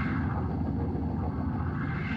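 A dense, low rumble in the closing music, with the treble sweeping away and then returning, set between passages of Hammond organ.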